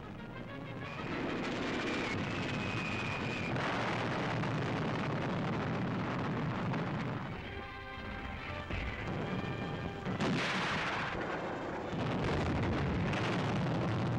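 Continuous battle noise of artillery fire and gunfire on an old newsreel soundtrack, dense and unbroken, with a louder burst about ten seconds in. Music plays underneath.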